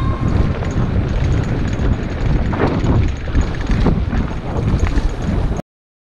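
Mountain bike rolling down a bumpy dirt singletrack, picked up by a camera mounted on the rider: wind buffeting the microphone over the rattle and knocks of the bike on the trail. The sound cuts off suddenly near the end.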